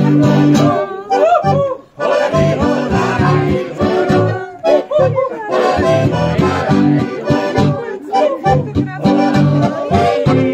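A Zupan piano accordion and an acoustic guitar play a lively Alpine folk song while men's voices sing along. The music stops briefly just before two seconds in, then carries on.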